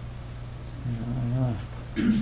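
A man's brief closed-mouth "mmm" about a second in, lasting about half a second and falling in pitch at its end, over a steady low electrical hum.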